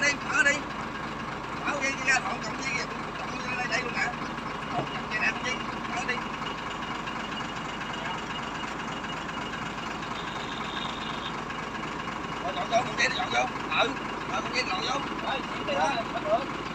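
Crane truck's engine idling steadily while its hook is lowered to the boat.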